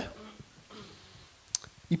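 A quiet pause in a man's talk into a handheld microphone, broken by a single sharp click about a second and a half in, just before he speaks again.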